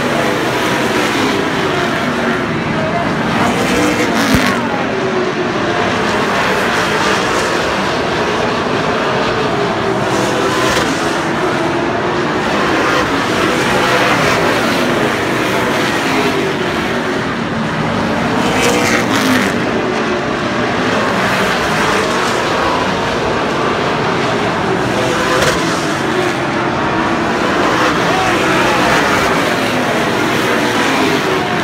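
A pack of late model stock cars racing, their V8 engines running hard without a break. The engine pitch repeatedly rises and falls as the cars brake into the turn and accelerate out. There is one sharp click about four seconds in.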